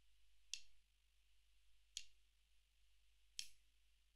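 Three sharp, evenly spaced clicks about a second and a half apart, over near silence.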